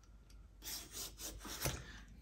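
A handheld vegetable peeler scraping strips of skin off a ripe papaya, about four short rasping strokes starting about half a second in.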